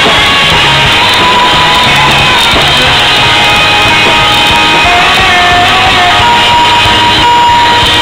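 Live rock band playing loudly, with guitars and drums, recorded close to the stage so the sound is distorted.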